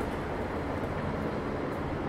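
Steady city street ambience: a low, even rumble of distant traffic.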